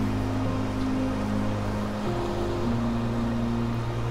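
Soft background music of held chords that shift every second or so, over a steady wash of surf.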